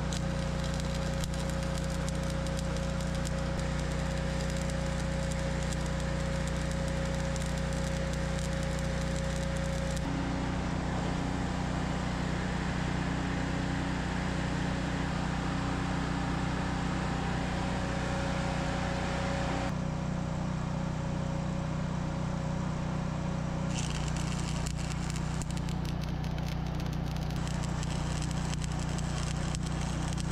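Electric arc welding on steel, a continuous crackling sizzle over a steady low hum, the sound changing abruptly about a third of the way in, two-thirds in and again shortly after.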